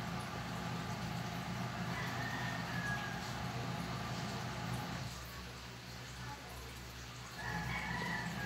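A low steady hum that fades out about five seconds in and comes back near the end, with a rooster crowing faintly in the distance about two seconds in and again near the end.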